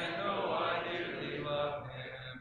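A church congregation singing a hymn a cappella, many voices together holding and moving between sustained notes of the chorus.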